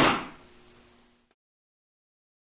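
Home-made garbage-bin vortex cannon firing: its bungee-tensioned plastic film diaphragm snaps forward with a single sharp thump that dies away over about a second, with a faint ring from the bin.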